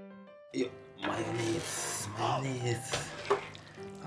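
Tongs and a wooden spoon scraping and tossing yakisoba noodles in an electric griddle pan: a busy clatter of scraping and clicking that starts about half a second in, after a few soft piano notes.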